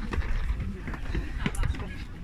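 Outdoor crowd of people chatting in the background, with an irregular low rumble of wind on the microphone and a few short knocks.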